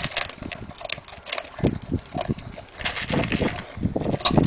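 Large dog eating dry kibble from a plastic bowl: irregular crunching and chomping, with heavier bites in clusters about one and a half seconds in and again past the three-second mark.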